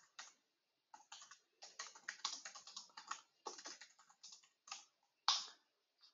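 Computer keyboard typing: a quick, irregular run of faint keystrokes, with one louder stroke near the end.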